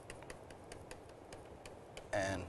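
Faint, irregular ticking of a stylus tip tapping on a tablet screen as words are handwritten, several small clicks a second.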